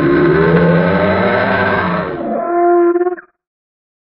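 Homemade dinosaur call for Agathaumas: a loud, low, drawn-out call with a bending pitch, which about two seconds in turns thinner and higher on a steady tone and cuts off suddenly a second later.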